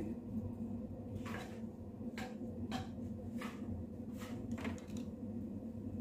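Sliced bacon frying in a hot frying pan, just put in: brief sharp crackles about once a second over a low steady hum.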